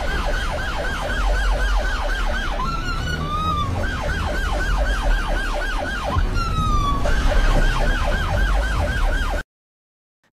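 AI-generated (AudioX) soundtrack: a rapid yelping siren, about four falling sweeps a second, over a steady low rumble. The yelping breaks off twice for a single gliding tone, and all of it cuts off suddenly near the end.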